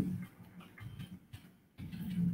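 Scattered clicks of a computer keyboard being typed on, with a brief low hum at the very start.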